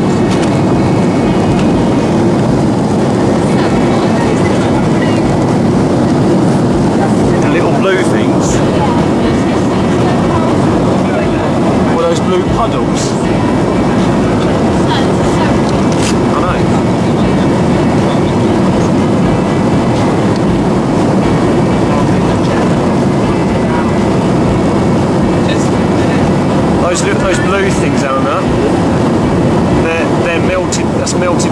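Steady jet airliner cabin noise: the engines and airflow heard from a window seat inside the passenger cabin. A few faint voices and small clicks come through now and then.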